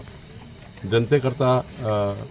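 Crickets chirring in a steady high-pitched drone, with a man's speech coming in over it about a second in.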